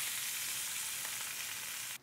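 Chorizo sausage sizzling as it browns in a nonstick skillet: a steady frying hiss that cuts off suddenly at the end.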